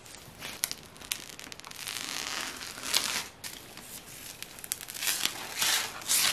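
Protective plastic film being peeled off a PC case's glass panel. It crackles and crinkles in a few long pulls with sharp little clicks in between.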